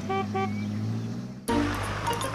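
Two quick car-horn toots, a beep-beep, at the start, over a held low note that ends the theme jingle. About one and a half seconds in, new light music starts suddenly.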